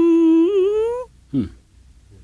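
A voice holding a long, drawn-out "hmm" on a steady pitch that rises at the end and stops about a second in. A brief falling vocal sound follows shortly after.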